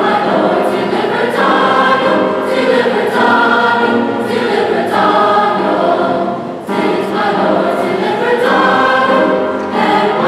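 Large mixed choir singing in harmony, with a short break between phrases about two-thirds of the way through.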